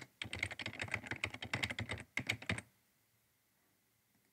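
Computer keyboard typing: a quick, steady run of key clicks that stops about two-thirds of the way in.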